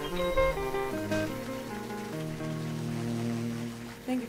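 Jazz combo ending a ballad: a few electric archtop guitar notes in the first second, then a final chord held and slowly fading, with low bass notes ringing under it.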